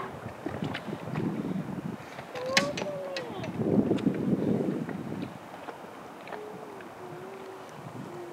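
River water lapping and swishing around a drifting inflatable raft, with wind on the microphone and a louder stretch of water noise near the middle. A voice sounds briefly, wordlessly, a few seconds in and again near the end.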